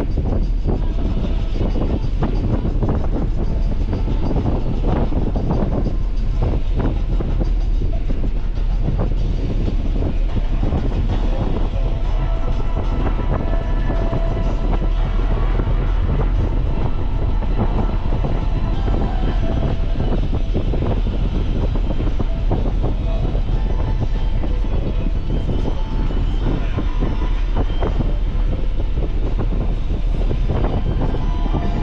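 Steady road and engine rumble inside a moving Nissan 300ZX, with car-radio music faintly underneath.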